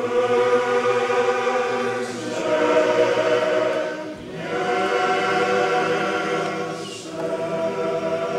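Male choir singing a Greek song in full, held chords, the phrases breaking briefly about two, four and seven seconds in.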